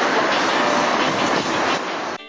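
Steady, loud rushing noise of a city street outdoors, picked up by a camcorder microphone.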